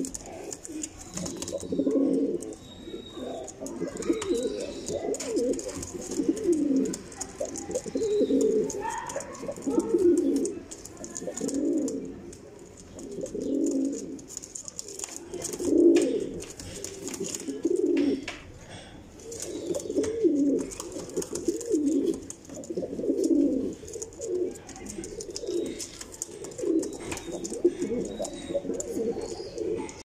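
Domestic Rampuri pigeons cooing over and over, a low coo about every one to two seconds, with faint clicks in between.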